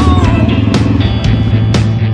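Rock background music with a steady drumbeat, about two beats a second, and a bending melodic line near the start.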